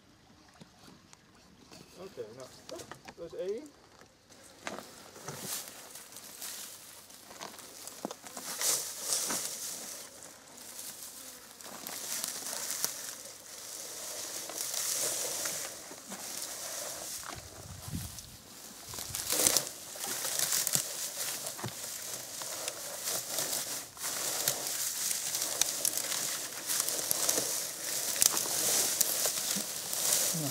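Dry cut grass rustling and crackling as gloved hands stuff it into a plastic compost bin and press it down, in irregular handfuls that get louder after the first few seconds.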